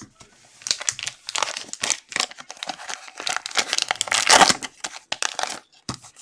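Hard plastic graded trading-card cases being handled: an irregular run of crinkling rustles and light clacks, loudest about four and a half seconds in.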